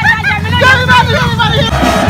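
Excited voices shouting and calling in a street crowd over the low, steady running of a quad bike engine.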